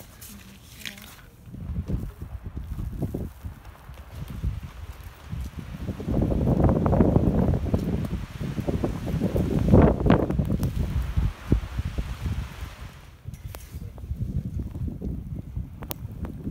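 Wind buffeting a phone microphone in a snowstorm, gusting loudest in the middle and easing toward the end.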